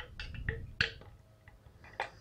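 Several light metallic clicks and taps, the loudest a bit under a second in, from a camshaft and its large timing gear being set into an open air-cooled VW engine case half against the crankshaft gear.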